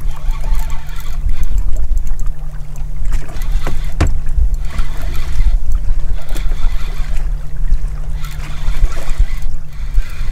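Steady low rumble and hum of a small boat at sea, with a single knock about four seconds in.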